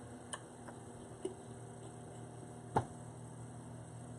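A pause with a steady low electrical hum and a few faint clicks; the sharpest click comes about three-quarters of the way through.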